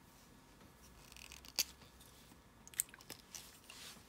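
Plastic pens being handled on a tabletop: a few small clicks and taps, the sharpest about a second and a half in, with a soft scuff just before it.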